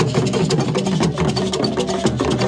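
Traditional Ghanaian drumming and percussion accompanying a dance: rapid, dense, even strokes over a steady low hum.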